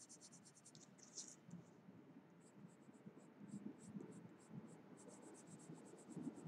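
Graphite pencil scratching on paper in quick back-and-forth shading strokes, about nine a second, faint. The strokes break off about a second in, come sparser in the middle, and turn rapid again near the end.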